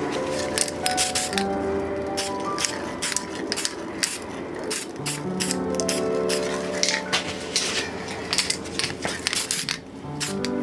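Instrumental background music: held notes that change in steps, with short clicky hits over them.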